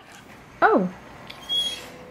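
Belgian Malinois giving a short yelp that falls steeply in pitch about half a second in, then a faint thin whine near the end. It is the sound of a dog impatient for a treat it is being made to wait for.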